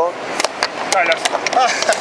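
Quick knocks and clicks of wooden chess pieces set down on a wooden board and of the chess clock being hit, about seven in two seconds, during a blitz time scramble with one side's clock running down to zero. Voices talk over them.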